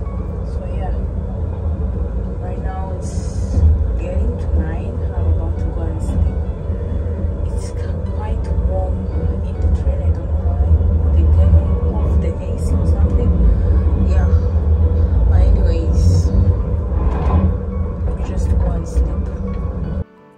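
Steady low rumble of a high-speed train running, heard inside its onboard toilet cubicle, with faint voices and background music over it.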